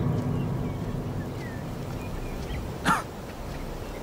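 Courtyard ambience: a low tone left from a music hit fades away over the first second, faint bird chirps follow, and a single short animal call with falling pitch comes about three seconds in.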